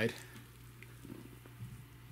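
Faint rustling and crackling of a gloved hand digging through moist worm-bin compost and shredded bedding, with a few soft bumps between one and two seconds in.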